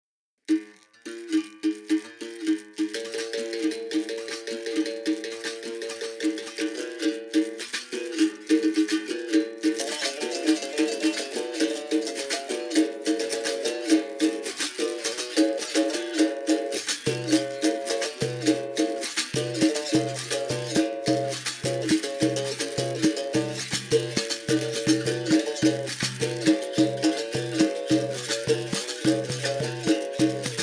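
Instrumental opening of a capoeira song: a berimbau struck in a steady repeating rhythm, with a rattling shaker. The sound fills out about ten seconds in, and a deep low part joins at about seventeen seconds.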